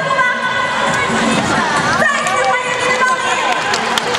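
A woman talking in Chinese through a public-address microphone, over music and audience noise.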